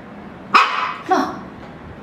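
A small dog barking: two short, high barks about half a second apart.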